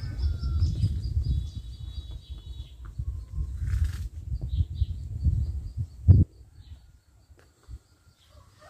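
Small birds chirping faintly over a low, uneven rumble on the microphone. The rumble ends with one sharp knock about six seconds in, after which only the faint chirps remain.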